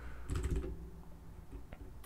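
Computer keyboard typing: a quick run of keystrokes about half a second in, then a few sparse key clicks.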